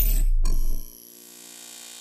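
Logo-intro sound effects: the tail of a loud, low boom with a rushing noise cuts off just under a second in, with a brief sharp hit near half a second. A much quieter steady ringing with many overtones follows.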